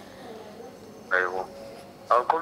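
Quiet room tone, broken about a second in by one short vocal sound from a person, a brief syllable or 'mm'.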